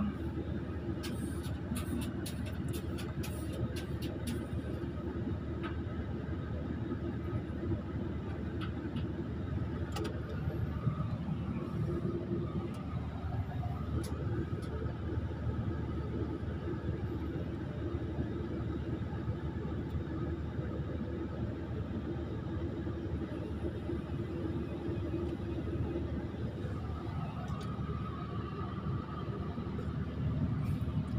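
Excavator's diesel engine running steadily, heard from inside the operator's cab, with a few light clicks in the first few seconds.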